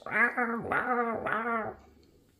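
A man imitating a T-rex roar with his voice: three drawn-out calls, each rising and falling in pitch.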